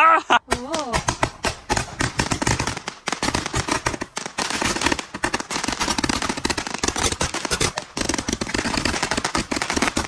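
Handheld multi-shot firework tube firing shot after shot into the air, a dense, unbroken run of rapid pops and crackle that starts about a second in. A voice cries out just before it begins.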